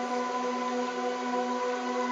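Steady electronic entrainment tones, a 396 Hz monaural beat with an isochronic tone pulsing at 15 Hz, layered with several other held tones over an even hiss.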